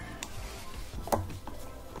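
A few small plastic clicks and handling noises as a ground wire is pressed under a hook on the back frame of a steering wheel, the loudest click about a second in.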